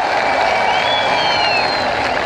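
A large crowd cheering and shouting, a loud, steady wall of voices with single calls rising above it.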